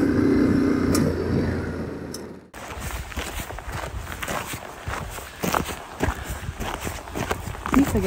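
Yamaha Ténéré 700 parallel-twin engine running at a steady road speed, with wind. It cuts off abruptly about two and a half seconds in, giving way to irregular crunching footsteps on stony, mossy ground with wind on the microphone.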